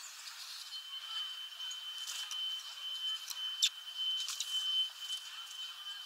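Small birds at a window feeder of sunflower seeds: several short, sharp high chirps or clicks, the loudest in the middle. Under them runs a steady thin high tone that starts about a second in.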